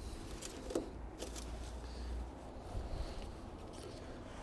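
Faint light clicks and rustling of an engine oil dipstick being handled with a rag, over a low steady rumble.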